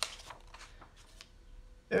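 Paper sheets being handled: a sharp rustle at the start, then a few faint scattered rustles and brushes of paper.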